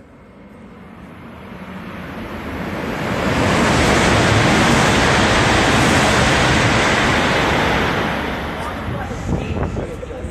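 Tohoku Shinkansen train passing through the station at close to 300 km/h without stopping: a rush of air and rail noise that builds over about three seconds, holds loud for about four seconds, then fades. Wind buffets the microphone as it goes by.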